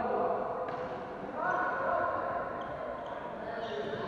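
Floorball players shouting and calling to each other on the court, echoing in a large sports hall. There are two bursts of calls, one at the start and one about a second and a half in, then short high squeaks toward the end, with the knocks of play underneath.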